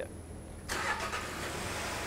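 A 2011 Hyundai Sonata's 2.4-litre G4KJ four-cylinder engine is started about two-thirds of a second in and settles into a steady idle.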